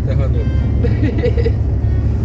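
Steady low rumble of road and engine noise inside a moving car's cabin, with brief snatches of quiet talk over it.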